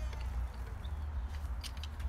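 A low steady hum, with a few faint clicks near the end as the electric guitar is lifted and handled.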